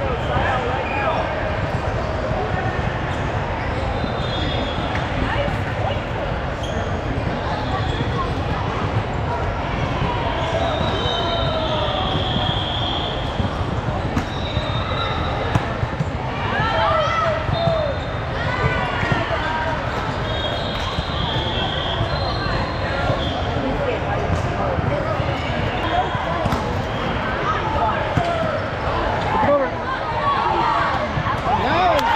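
Gym-hall din of many voices echoing in a large room, with volleyballs being hit and bouncing on the hardwood floor and brief high squeaks of athletic shoes on the court now and then.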